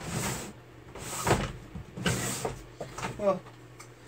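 Rummaging: short rustles and light knocks of things being moved and picked up, three or four bursts about a second apart.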